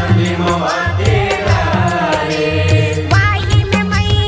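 Chhattisgarhi devotional jas song: a sung melodic line over tabla and a steady bass beat. About three seconds in it gives way to a stepped instrumental melody on keyboard.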